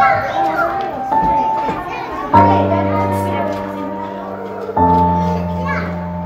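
Background music of sustained chords that change every second or two, each new chord starting a little louder, with children's voices chattering over it.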